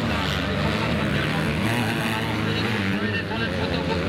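Motocross bike engines revving and changing pitch as the bikes race along a dirt track, with an indistinct voice mixed in.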